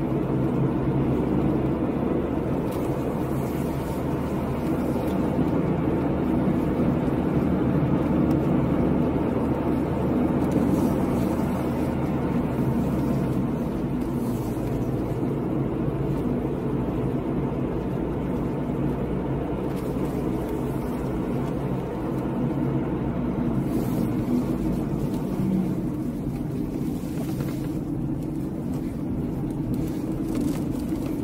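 Car engine and tyre noise heard from inside the cabin while driving, a steady drone whose deep rumble eases about halfway through.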